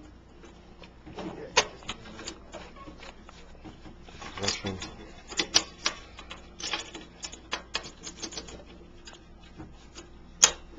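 Irregular small metallic clicks and rubbing as hands and a hand tool work at the brass fittings and wires of a Midmark Ritter M7 autoclave while the temperature gauge is fitted back in place.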